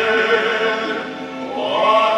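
Men's voices singing held notes together in harmony. The sound dips briefly a little past the middle, and then a new chord swells in near the end.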